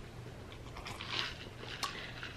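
A person sipping from a plastic cup: faint sipping and swallowing, with a soft slurp about a second in and a light click near the end.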